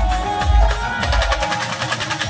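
A Maharashtrian street band plays loud folk music: heavy bass beats under a melody, with drums. In the second half there is a rapid drum roll while the bass briefly drops out.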